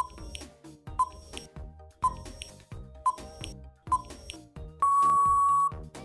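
Quiz countdown timer sound effect: five ticks a second apart over soft background music, then a single steady beep lasting nearly a second, marking the end of the answer time.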